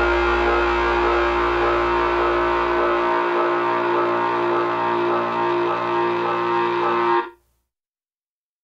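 A song's final chord held and ringing on distorted electric guitar, with its lowest bass notes dropping away about three seconds in; the whole sound cuts off sharply about seven seconds in.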